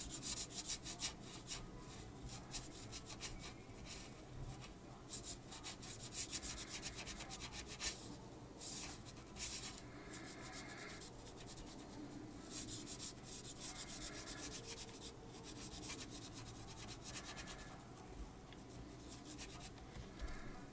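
Felt-tip pen rubbing back and forth on paper as a small area is coloured in, a faint scratchy rasp coming in runs of quick strokes with short pauses between.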